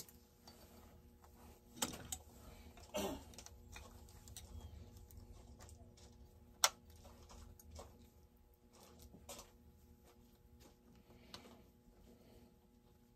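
A few faint, scattered clicks and light knocks of small chainsaw parts and hand tools being handled during a teardown, the sharpest click a little past halfway.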